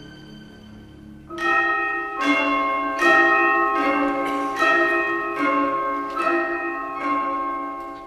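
Orchestral music: a soft held passage, then, just over a second in, a series of about eight struck, bell-like ringing chords, roughly one every 0.8 s, each left to ring and fade.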